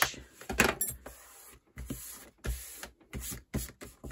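A few short scraping strokes of a plastic bone folder burnishing a fold in stiff cardstock, the loudest about half a second in, followed by hands pressing and smoothing the card on a plastic scoring board.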